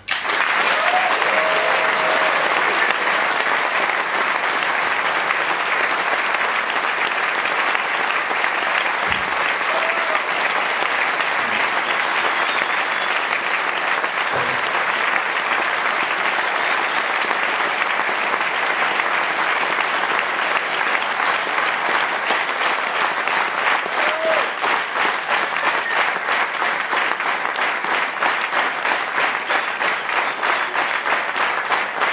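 Concert audience applauding at the end of a song, a dense, steady sound of many hands clapping, with a few short voiced calls from the crowd. In the last several seconds the clapping pulses more evenly, as if falling into a shared rhythm.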